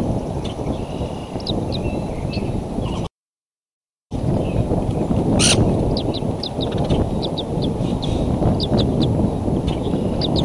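Steady low rumble of wind on an outdoor nest microphone, with short high bird chirps in quick groups of two to four. The sound cuts out completely for about a second a little before the middle, and a single sharp click comes a little past the middle.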